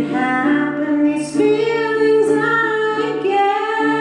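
A woman singing in long held notes, accompanying herself on a ukulele.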